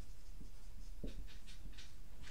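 Marker writing on a whiteboard: a faint tap, then a quick run of short, high, scratchy strokes from about a second in as letters are written.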